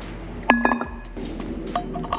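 Metal parts clinking as a steel rear belt pulley and its bolts and washers are handled on a motorcycle wheel hub: one sharp clink about half a second in that rings briefly, then a few lighter clinks near the end.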